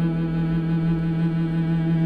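Stradivari cello playing one long bowed note, held steadily with vibrato.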